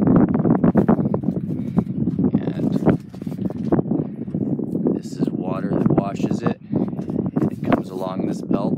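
Fire agate sorting machine running, its rubber conveyor belt carrying gravel with a steady rumble and many small rattles and clicks of rock.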